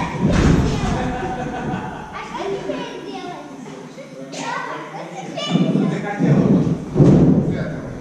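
Heavy thuds of a person bouncing and landing on a trampoline, one near the start and a run of three about 0.7 s apart late on, echoing in a large gym hall. Voices talk in the background.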